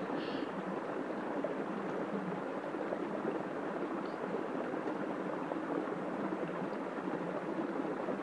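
Steady rush of water at a hydraulic ram pump being primed by hand, water spilling from its waste valve into the stream.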